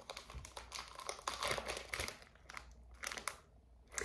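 Clear plastic packaging around a wax melt crinkling and crackling as it is handled, a run of small irregular crackles that dies away near the end.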